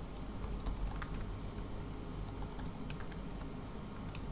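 Typing on a computer keyboard: quick, irregular key clicks, some in short runs, over a low steady hum.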